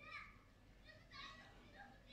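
Near silence, with faint, high-pitched children's voices in the background a few times.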